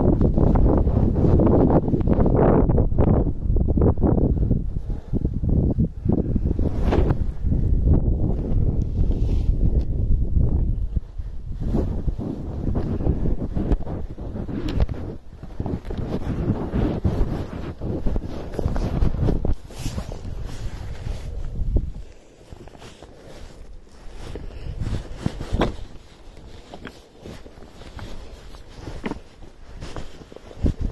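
Wind buffeting the microphone, heavy for about the first ten seconds and lighter after, with occasional scrapes and knocks of boots stepping on rock.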